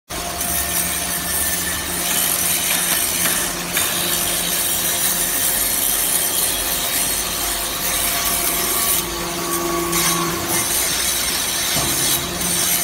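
Y83-6300 hydraulic metal-chip briquetting press running with its chip conveyor: a steady motor and pump hum under a continuous scraping hiss of metal shavings. A higher tone joins for a second or so about nine seconds in.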